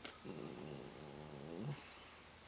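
A man's low closed-mouth thinking hum, 'hmmm', held for about a second and a half with a wavering pitch, followed by a short breathy hiss near the end.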